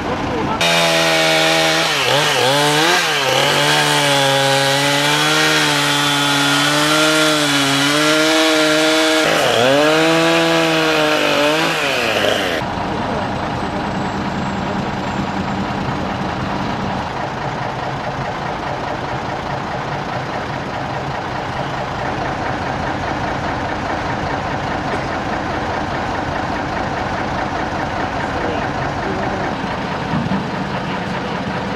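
Two-stroke chainsaw running and cutting through a spruce trunk, its pitch dipping and recovering under load, for about twelve seconds. It cuts off abruptly and is followed by a steady truck engine idling.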